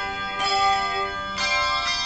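English handbells rung together in chords. A new chord is struck about once a second and left to ring on.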